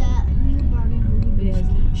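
Steady low rumble of a car being driven, heard from inside the cabin, under soft talking voices, with one voice clearer right at the start.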